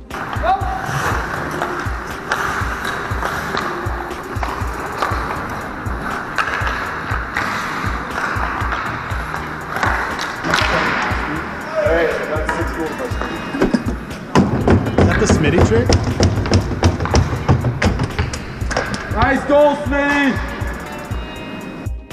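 Ice hockey game sound: skate blades scraping and carving on the ice, with sharp clacks of sticks and puck, under a steady music track. Voices shout briefly around twelve seconds in and again near the end.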